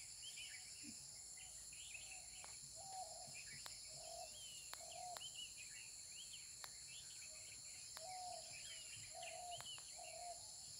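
Faint outdoor ambience: a steady high-pitched insect drone, with birds chirping and giving short repeated lower calls throughout, and a few faint clicks.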